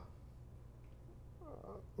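Quiet room tone with a steady low hum during a pause in speech. About one and a half seconds in there is a faint, brief voice-like sound with a wavering pitch.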